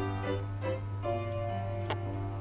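Live piano music: slow, held notes and chords over a steady low hum, with a sharp click near the end.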